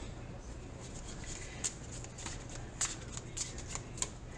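A deck of reading cards being shuffled and handled by hand: a run of short, crisp card clicks and snaps, most of them from about a second in.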